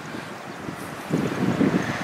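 Wind buffeting the microphone, with a louder gust of rumbling noise about a second in.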